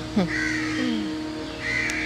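A crow cawing twice, once about half a second in and again near the end, over a steady low hum.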